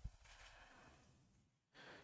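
Near silence: faint room tone in a press-conference room, between two stretches of speech.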